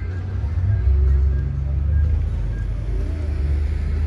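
Low, steady rumble of road traffic.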